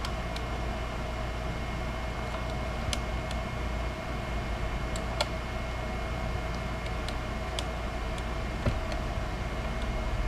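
Steady electrical hum and room noise, with a few faint sharp clicks scattered through it as an allen wrench backs out a Stratocaster truss rod nut whose socket is partly stripped.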